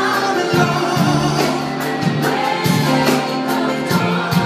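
Live pop band playing on stage: singing voices over drums and electric guitars, with a steady beat.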